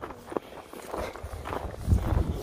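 Hiking boots crunching through snow in a run of walking steps, with a louder low thud near the end.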